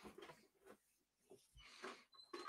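Near silence, with a few faint, brief breathy sounds.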